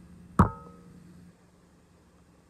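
A single sharp knock with a short ringing tail about half a second in, as a hand bumps the device that is recording. A low background hum fades out about a second later.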